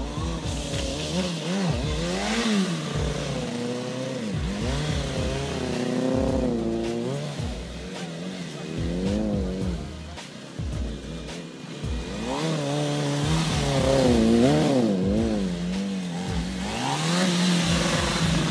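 Small motorcycle engine revving up and down over and over during stunt riding, its pitch rising and falling every second or two. It is quieter for a few seconds in the middle, then revs hard again.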